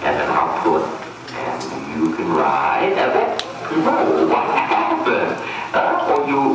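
Voices speaking in bursts of a second or so throughout, with no clear words.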